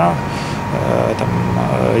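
A man's voice in a drawn-out hesitation pause mid-sentence, over a steady low background hum.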